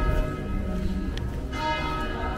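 Church bell ringing: a fresh stroke comes about a second and a half in, each stroke ringing on with several steady tones.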